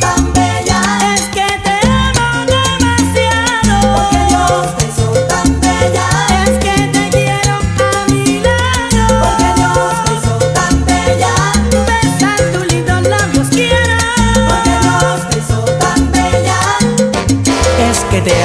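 Salsa romántica music playing loud and steady: a full band with a bass line changing notes on the beat under busy percussion and melodic lines.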